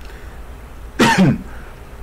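A man coughs once, a short cough to clear his throat, about a second in.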